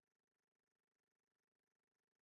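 Near silence: no audible sound, only a very faint electronic noise floor.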